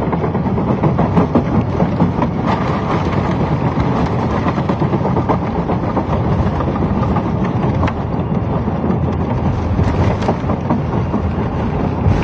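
Inside the cabin of an Airbus A320neo airliner rolling down the runway on its takeoff run: loud, steady engine and runway rumble with frequent rattles and knocks.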